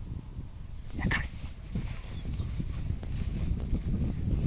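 Cocker spaniel gives one short yip about a second in, over a continuous low rustling.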